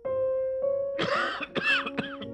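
Soft piano music, then about halfway through a man coughs three times in quick succession: a smoker's cough.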